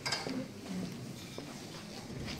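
Faint hall room noise with a few scattered clicks and knocks; the sharpest click comes just after the start.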